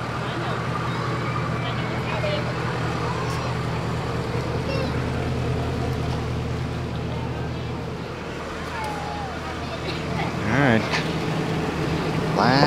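Steady low hum of a boat engine idling, fading after about eight seconds, under faint chatter of people; a short, louder vocal sound comes close by near the end.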